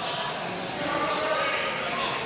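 People's voices calling out in a large gym hall, with some dull thuds among them.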